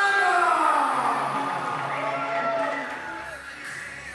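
A ring announcer's drawn-out call through the hall's PA system, a long held note that falls in pitch and trails off about a second in, followed by fainter pitched sound that fades away.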